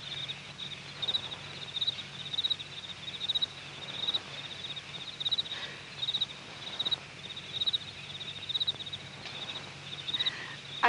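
Cricket chirping, short high trills repeating about twice a second, with a steady low hum underneath.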